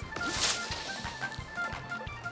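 Cartoon background music with short melodic notes over a steady beat, with a brief noisy swish about half a second in.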